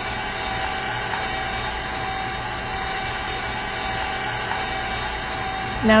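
Electric mixer motor running steadily at an even pitch, beating gingerbread dough of shortening, sugar, molasses and eggs.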